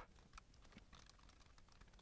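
Faint typing on a laptop keyboard: a few light, irregular key clicks.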